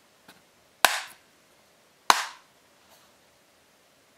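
Two sharp knocks about a second and a quarter apart, each with a short ringing tail, with a fainter click just before them.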